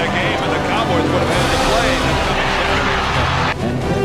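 Background music mixed with game broadcast audio: an announcer's voice and stadium crowd noise. The crowd noise swells about a second in and cuts off abruptly near the end.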